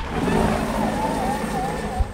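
Steady engine and rotor noise of a firefighting helicopter working over a brush fire at night, with a faint wavering tone over it.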